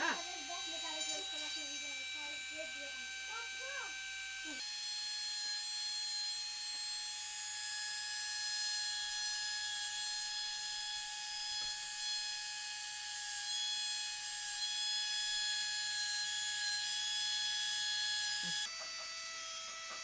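Small electric rotary engraving handpiece with a diamond flywheel cutter, spinning at speed while cutting diamond cuts into a gold tube bangle. It makes a steady high-pitched whine that shifts abruptly twice, about four and a half seconds in and again near the end.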